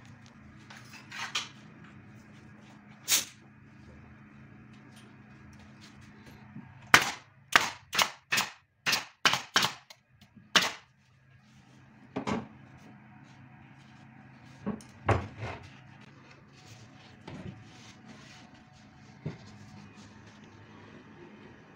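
Sharp, loud knocks from work on a plywood subwoofer cabinet. About seven seconds in comes a quick run of about eight impacts in under four seconds, with single knocks before and after.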